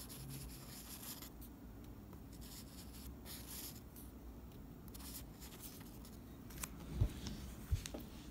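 A small steel guitar screw rubbed by hand on a fine abrasive sheet to polish it: soft scratching in short strokes that come and go. Two low bumps near the end.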